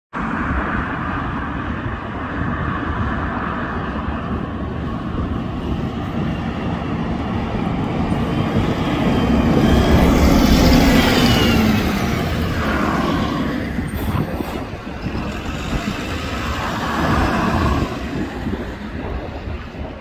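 City transit bus approaching along a street and passing close by, its engine and tyres loudest about halfway through with a falling pitch as it goes past, then fading off over steady traffic noise.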